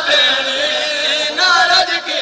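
Male voices chanting a noha, a Shia lament, through microphones, in long held and wavering notes.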